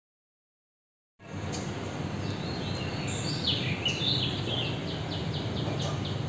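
Dead silence for about a second, then steady outdoor background noise in which a songbird sings. Its varied chirps end in a quick run of repeated short notes near the end.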